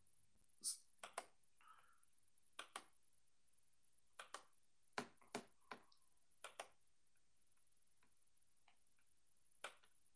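Faint sharp clicks of a computer mouse, about a dozen scattered through near silence, several in quick pairs like double-clicks.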